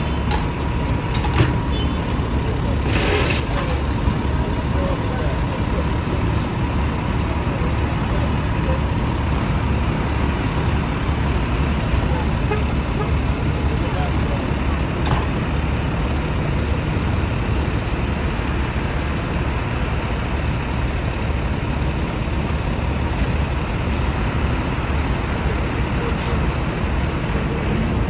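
Idling emergency vehicles and passing street traffic make a steady, low engine rumble. A few brief knocks sound in the first several seconds.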